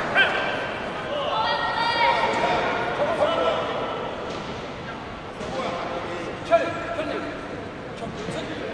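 Raised voices shouting and calling out across the hall, with a few sharp thuds at about 0.2, 3.2 and 6.5 seconds.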